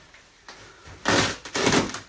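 Plastic wrapping crinkling as long plastic-wrapped bed panels are lifted out of their box, in two loud bursts from about a second in.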